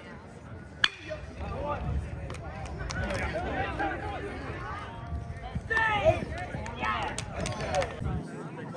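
A single sharp crack of a metal baseball bat hitting the pitch about a second in, followed by several voices from players and spectators shouting and calling out over one another.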